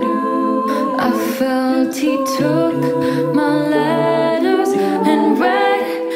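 Women's a cappella group singing in close harmony, several voices holding chords that shift every second or so. A lower part comes in for about two seconds in the middle.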